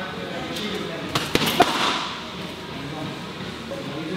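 Gloved punches landing on a hanging heavy bag: a quick run of thuds just over a second in, the last one the loudest, as a combination finishing with a hard straight to the body.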